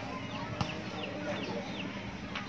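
A bird calling: about five short, falling chirps in quick succession, with one sharp click a little over half a second in, over faint background voices.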